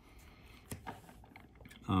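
A few scattered light clicks and taps as an X-Acto craft knife is picked up and set to a block of modelling clay on a tabletop.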